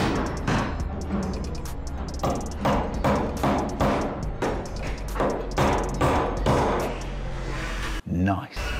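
Claw hammer driving nails into wooden framing, a string of repeated strikes, over background music.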